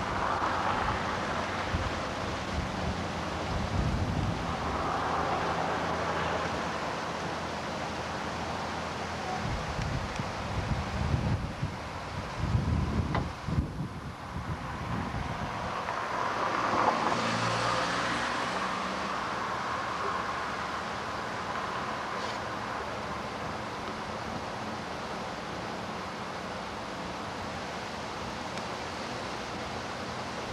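Outdoor background noise of road traffic, with vehicles passing and swelling louder now and then, and wind buffeting the microphone.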